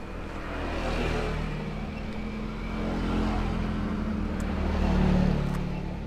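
Engine of a motor vehicle passing on the road, its pitch rising and its sound swelling to a peak about five seconds in, then fading away.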